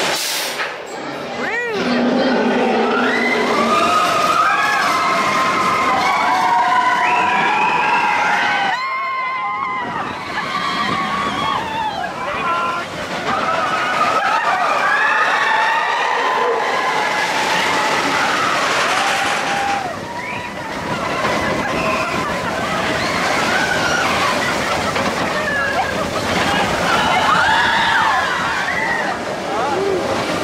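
Riders on the Expedition Everest roller coaster screaming and yelling in long rising and falling cries over a steady rush of wind and the running coaster train. There is a brief dip about nine seconds in.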